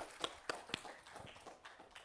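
A run of sharp taps, about four a second, loudest in the first second and fading after.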